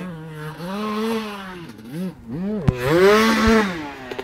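Dirt bike engine revving up and falling back in long swells, with a few quicker throttle blips in between, as the bike rides the track and takes a jump. A single sharp knock about two and a half seconds in.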